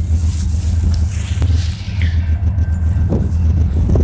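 Steady low drone of a southbound CSX freight train's diesel locomotives approaching, with a few light knocks.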